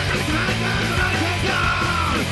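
Metallic psychobilly band recording played from a vinyl record: dense, loud rock with a shouted vocal.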